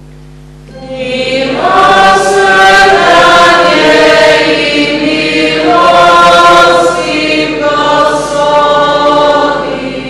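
A woman cantor singing the sung refrain of the responsorial psalm over sustained electronic keyboard chords. The chords sound alone at first and the voice comes in about a second in, with a short break near the middle.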